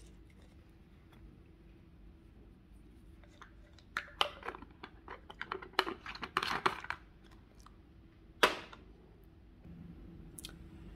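Plastic supplement pill bottle and its screw cap being handled: a run of small plastic clicks and rustles from about four to seven seconds in, then one sharp click near the end.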